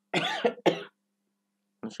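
Two quick coughs, one right after the other, within the first second.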